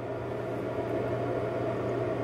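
A steady low background hum with no other events: room or equipment noise without a distinct source.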